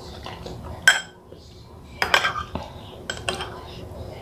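Metal spoon clinking against a ceramic soup bowl: several separate clinks, the sharpest about a second in, with a brief ring.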